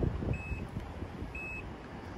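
Power liftgate of a 2012 Nissan Murano opening, its warning buzzer giving a short high beep about once a second, twice here, over a low rumble.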